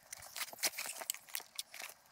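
Handling noise: a string of irregular light clicks and rustles as cables are unthreaded and a fabric radio pouch is pulled off a pack frame.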